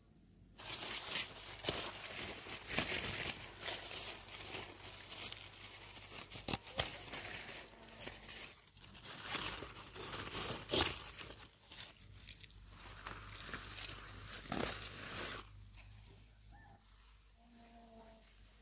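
Leafy greens being picked by hand up close: leaves rustling and crackling, with stalks snapping and tearing off, a dense run of crinkling and sharp snaps that stops suddenly about fifteen seconds in. The loudest snap comes just under eleven seconds in.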